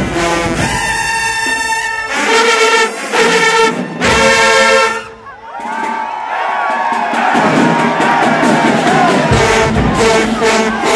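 Marching band brass section (trumpets, trombones and sousaphones) playing loud, punchy chords in a rhythmic pattern. About halfway through, the horns stop briefly and a crowd cheers and shouts. The brass comes back in near the end.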